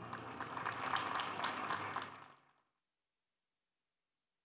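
Audience applauding, fading away and cut to silence about two and a half seconds in.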